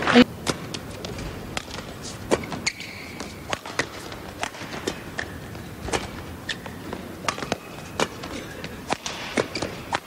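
Badminton rally in an indoor arena: irregular sharp cracks of rackets striking the shuttlecock, mixed with players' footfalls on the court. A steady murmur of the crowd fills the hall behind them. The loudest crack comes right at the start.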